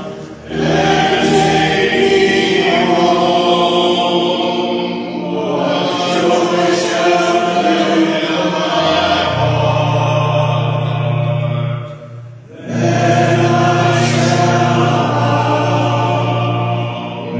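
Church organ playing a hymn in sustained chords over held bass notes, with short breaks between phrases about half a second in and again around twelve seconds.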